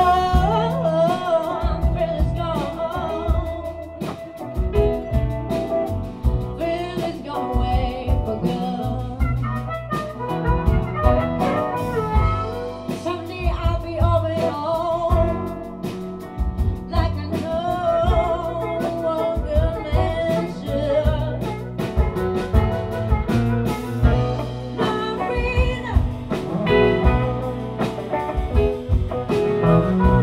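Live blues band playing a slow blues. A harmonica takes a wailing, bending lead over electric guitar, keyboard, upright bass and drums, and the vocal comes back in at the very end.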